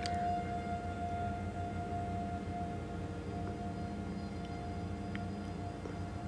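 A single steady tone held without change over a low droning hum: a sustained drone in the film's eerie score.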